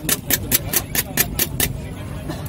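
Eggs being beaten by hand in a bowl: quick, even clicking strokes, about five a second, that stop shortly before the end, over a steady low rumble.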